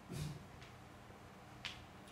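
Quiet room with a brief soft sound just after the start and one sharp click about a second and a half in: a marker pen tapping onto a whiteboard as writing begins.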